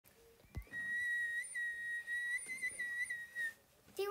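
A short click, then a whistle holding one steady high note for about three seconds with a few slight wobbles in pitch, stopping short.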